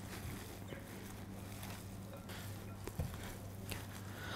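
Faint, irregular wet rustling of a gloved hand mixing sliced beef, onions and marinade in a glass bowl, over a steady low hum.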